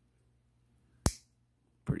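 A single sharp click about halfway through, from a folding pocket knife's blade snapping open against its spring.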